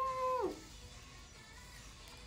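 A young woman's voice holding a drawn-out, steady high syllable that drops in pitch and stops about half a second in. Faint background music follows.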